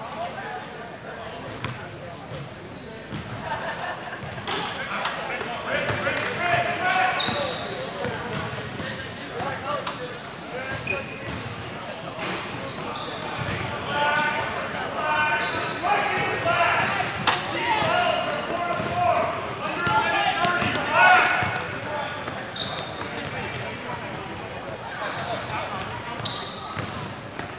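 A basketball bouncing on a hardwood gym court during play, with many short high squeaks of sneakers on the floor and indistinct shouting voices in a large, echoing hall.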